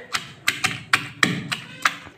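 A stone pestle pounding chopped onion and green chillies in a stone mortar. It strikes about three times a second, each stroke a sharp knock with a wet crunch.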